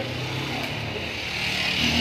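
A motor vehicle engine running with a steady low hum, and a hiss that grows louder toward the end.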